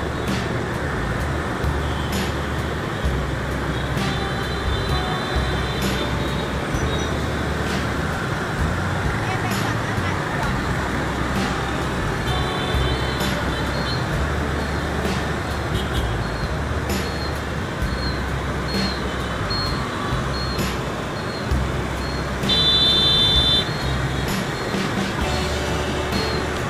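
Dense city motorbike traffic heard while riding along with it: a steady mix of engine and road noise over a low rumble. Vehicle horns sound three times, about four seconds in, around twelve seconds in, and loudest near the end.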